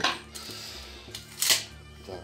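Hard knocks and clinks of long metal screwdriver bits being set down on a table, two sharp knocks about a second and a half apart with a brief scrape between them, the second the loudest. Background music runs underneath.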